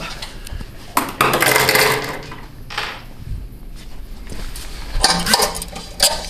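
Metal handcuffs clinking and clattering against a stainless-steel bench as a prisoner is cuffed to it, with a burst of clatter about a second in and more clinks near the end.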